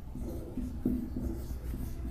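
Marker pen writing on a whiteboard: soft, irregular strokes as a word is written, one a little stronger near the middle. A low steady hum runs underneath.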